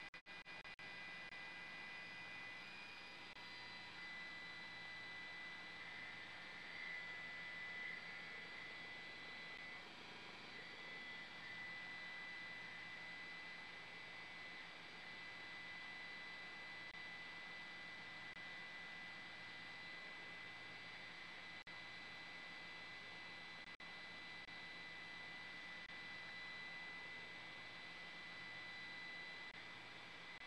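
Faint steady hiss with a thin, steady high-pitched whine running through it: electronic background noise of the raw aerial video feed, with no distinct sound event.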